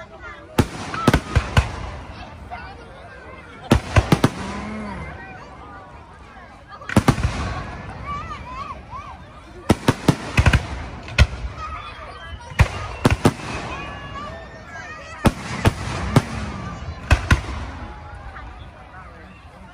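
Aerial firework shells bursting in quick clusters of two to four sharp bangs every few seconds, with people talking in the crowd between the bangs.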